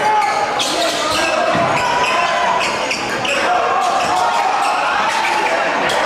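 Basketball bouncing on a hardwood gym floor as a player dribbles, with repeated sharp thuds over the chatter and shouts of a crowd.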